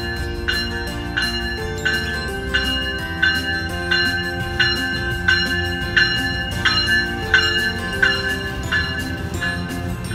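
A warning bell ringing at a steady pace of about three strikes every two seconds while a Metrolink train rolls in, with a low train rumble underneath.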